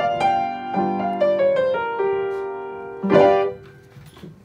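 Upright piano playing the close of a 12-bar blues in G. Held chords sit under a short right-hand line that steps up and back down, then a final chord is struck about three seconds in and released half a second later.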